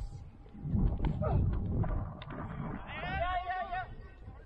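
Wind rumbling on the microphone, then near the end one long, wavering, high-pitched shout that lasts about a second.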